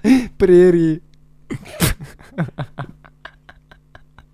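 Men laughing hard: a loud, wavering high-pitched laugh in the first second, then a sharp burst of breath and a run of short gasping huffs of laughter.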